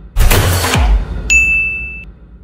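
Logo-animation sound effects: a loud whoosh-and-hit with a low tone sliding downward, then, just past halfway, a sudden bright high ding held steady until it stops at the end.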